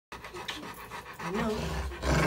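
Muzzled Rottweiler panting in quick breaths, with a short spoken word near the end.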